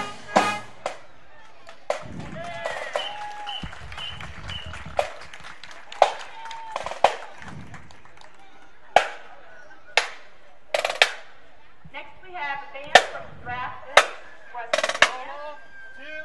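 The band's tune ends, then sharp drumstick clicks keep a steady beat about once a second, a marching band's drum tap for marching between tunes. Crowd voices murmur underneath.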